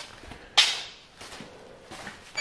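Footsteps on a concrete floor: one louder scuff about half a second in, then quieter steps.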